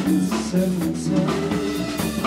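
Live blues band playing an instrumental passage: a drum kit keeping a steady beat under electric guitar, electric bass and a Hammond SK1 keyboard.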